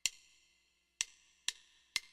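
Count-in clicks setting the 126 bpm tempo: one click, another about a second later, then two quicker clicks about half a second apart, one beat each.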